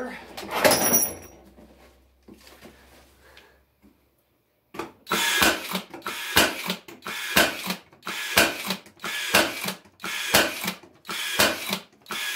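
Cordless brad nailer firing brads into old wooden deck pickets, one sharp shot about every half second, starting about five seconds in after some faint handling sounds.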